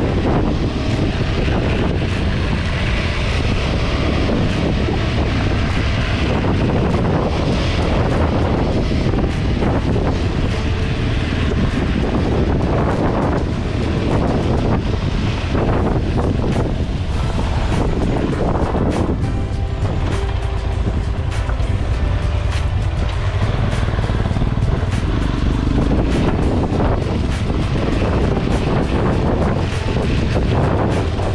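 Motorcycle engine running under way on a rough dirt trail, heavily buffeted by wind on the camera microphone, with a steady rumble.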